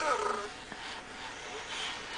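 Pleo robotic dinosaur giving a short animal-like call through its speaker, one cry of about half a second that falls in pitch, right at the start.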